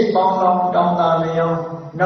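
A man's voice chanting in a steady, drawn-out tone, with a short break near the end.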